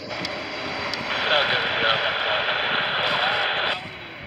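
Air traffic control radio chatter from an airband scanner: a hissy, hard-to-make-out transmission, louder from about a second in, that cuts off abruptly near the end.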